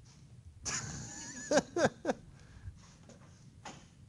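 A person laughing: two short, loud bursts with falling pitch about a second and a half in, after a stretch of quieter noise, then a few fainter sounds.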